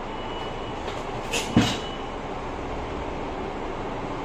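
Steady background rushing noise, with a short rustle and then a single sharp knock about a second and a half in.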